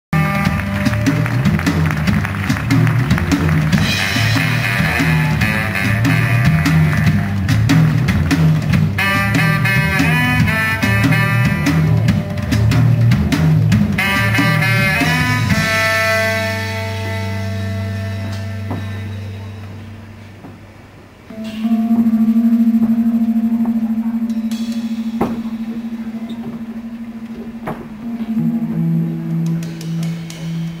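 Live instrumental music from a small band of baritone saxophone, guitar and drum kit: a busy rhythmic passage with a pulsing bass line and drums. About sixteen seconds in it thins to sustained low notes that fade, then a long held tone with a few light percussion taps.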